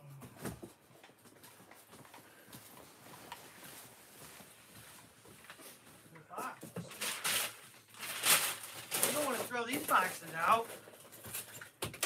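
Quiet room tone for about six seconds, then indistinct talking mixed with sharp rustling and knocking of things being handled, loudest in the last four seconds.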